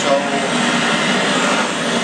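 Handheld gas torch flame burning with a loud, steady hiss as it preheats a thick aluminium swing arm joint before welding, so that less welding current is needed.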